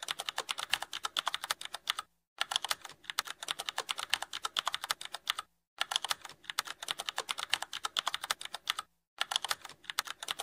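Computer keyboard typing sound effect: rapid keystrokes at about eight a second, with brief pauses about two, five and a half, and nine seconds in.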